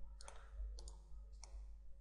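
A few faint computer mouse clicks, about one every half second or so.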